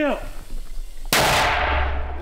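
A mortar firing about a second in: one sudden loud blast, followed by a low rumble.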